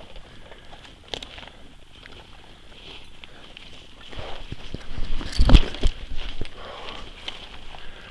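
Footsteps, rustling and scraping as a hiker and a leashed dog climb over a fallen tree trunk through undergrowth. The second half holds a cluster of thumps and knocks, the loudest about five and a half seconds in.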